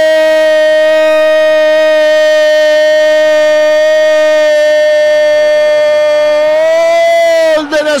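Radio football commentator's long held goal cry, "¡Gooool!", sustained on one loud note for about seven and a half seconds, rising slightly in pitch near the end before breaking off into speech.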